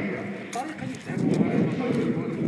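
Indistinct men's voices in the street, mixed with clacking footsteps on pavement.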